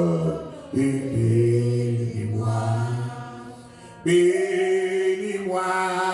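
A man singing a slow hymn tune unaccompanied into a microphone in long held notes, breaking off briefly about a second in and again about four seconds in.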